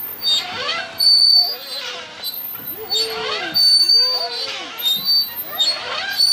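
Young children's voices and cries at a playground, in short rising and falling calls about once a second, mixed with brief high squeaks.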